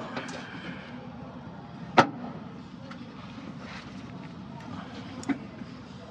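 Two sharp clicks from handling a headlight bulb's plastic wiring connector, the louder one about two seconds in and a smaller one about three seconds later, over a steady background hiss.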